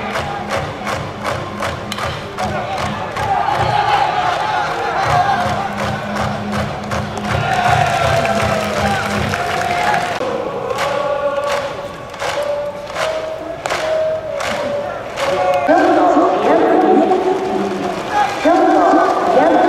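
Cheering section in the stands at a baseball game: band music with a drum beating steadily and a crowd chanting together. The drum beats come quickly for about ten seconds, then more sparsely, and the massed chanting grows louder near the end.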